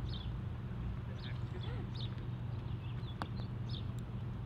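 Small birds chirping over a steady low hum, with one sharp click about three seconds in as a putter strikes a golf ball.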